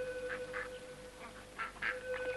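A flock of domestic waterfowl calling: a few short honks and quacks, bunched about half a second in and again near the end, over a faint steady tone.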